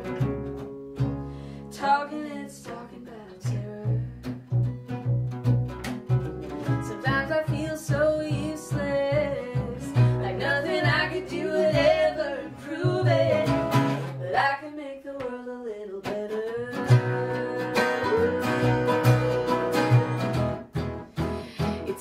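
Acoustic trio playing a song: a woman singing over strummed and picked acoustic guitar, octave mandolin and plucked upright double bass. The bass drops out briefly about two-thirds of the way through, then comes back in.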